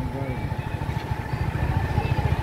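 Engine of the vehicle carrying the camera, running steadily with a rapid low pulsing as it drives along the road.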